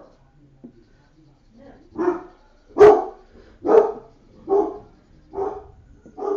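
A dog barking repeatedly, five single barks about a second apart, starting about two seconds in.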